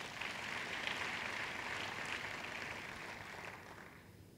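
Audience applauding lightly in a hall, dying away near the end.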